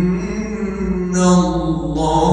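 A male reciter chanting the Quran in the melodic tajwid style, holding a long drawn-out note that swells louder about a second in.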